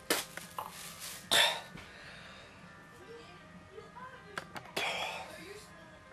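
A man retching and gagging into a plastic bag after swallowing urine. There are sharp heaves at the very start and a louder one about a second and a half in, with a weaker one near the end.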